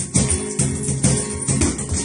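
Flamenco guitar playing bulerías, with sharp percussive strikes over it several times a second.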